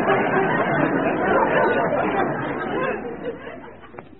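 Studio audience laughing at a punchline, a dense roll of many voices that dies away in the last second.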